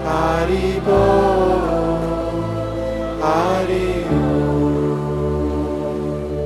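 A man singing a slow devotional mantra in long melodic phrases, one at the start and another a little after three seconds in, over sustained accompaniment chords whose bass shifts about a second in and again near four seconds.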